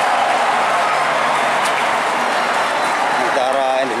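Large crowd's steady, dense din of many overlapping voices, loud and unbroken, with no single voice standing out.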